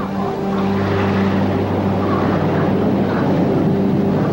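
Orchestral film score: held low notes sound under a dense rushing wash of noise, which thins near the end.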